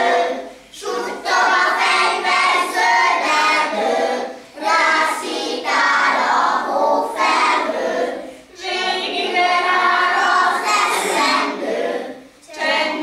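A group of young children singing a song together, with a woman's voice singing along. Phrases of about four seconds are separated by short pauses for breath.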